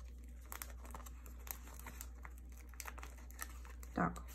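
Clear plastic binder sleeve pages crinkling and rustling faintly as photocards are slid into their pockets, with scattered light clicks and taps.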